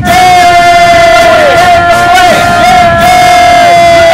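A crowd of fans yelling loud, drawn-out shouts, each held for a second or more and dropping in pitch at its end, several in a row.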